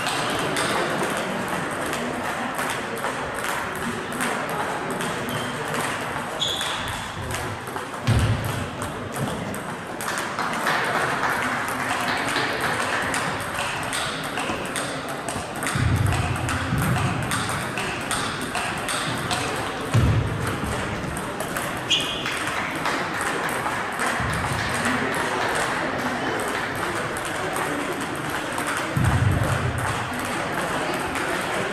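Table tennis balls clicking off paddles and tables in quick, continuous rallies across several tables, echoing in a large hall. A few low thumps stand out at intervals.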